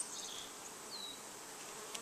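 Honey bees buzzing around an open hive, a faint steady hum.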